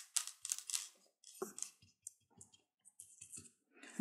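Small paintbrush dabbing and spreading thick craft mousse on paper: faint, irregular scratchy taps, close together at first and thinning out after about a second and a half.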